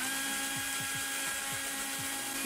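Cordless drill spinning the input shaft of a WPL RC axle with steel ring and pinion gears, running the gears in so they mesh properly. The drill's whine rises quickly at the start, then holds steady, and the gears turn smoothly with a faint regular ticking under the whine.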